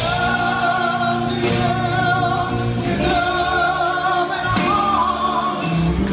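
A live band playing with a man singing lead, holding long sustained notes.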